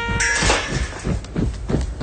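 A cartoon animal voice gives a short, cat-like cry as a held brass note in the score cuts off about half a second in. Then comes a quick run of soft low taps.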